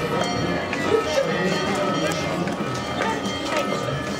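Chatter of many voices from a walking crowd, with footsteps on cobblestones and music playing in the background.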